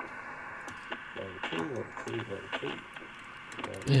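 Faulty HAM International Jumbo 3 CB radio's speaker playing faint, muffled, voice-like received audio over hiss, with a few clicks as the channel knob is turned. It is sounding very unwell: with an unsteady VCO it receives something, but not on the channel it should.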